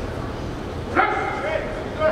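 A man's loud, drawn-out shout about a second in, over steady background noise.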